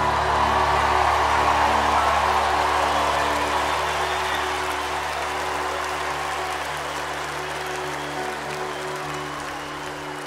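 Large arena crowd cheering and applauding over sustained, held music chords. The cheering swells just after the start and then slowly dies away.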